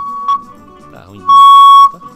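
A steady high electronic tone on the broadcast line, with a much louder blast of the same pitch lasting about half a second near the end, loud enough to distort.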